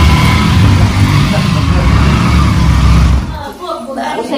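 Motorcycle engine running with a loud low rumble, dying away about three seconds in.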